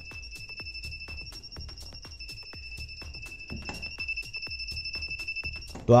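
Non-contact voltage tester pen's buzzer sounding a steady high-pitched beep while held near the wire of a lit LED string light: the signal that the wire is live. It cuts off just before the end.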